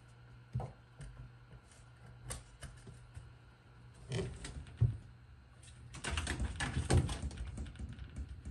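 Rabbit's feet scrabbling and hopping on a cardboard-lined wooden enclosure floor. Scattered clicks and scratches, a short burst about four seconds in, then a dense flurry from about six seconds in.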